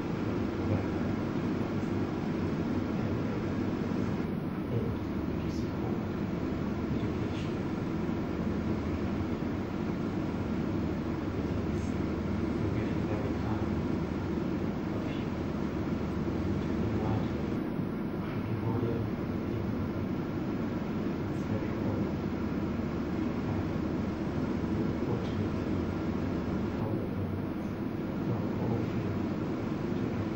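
Steady low rumbling background noise with no distinct events, as from a room's ventilation or the recording's own noise, with faint indistinct voices under it.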